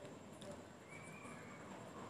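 Near silence: a faint, steady background hiss of room tone, with a brief faint high tone about a second in.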